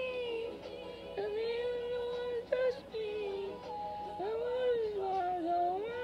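A female voice singing a slow pop ballad in long held notes that slide and bend between pitches, with no clear words.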